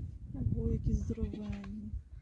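Cattle calling in a few short, bleat-like pitched notes over a low rumble.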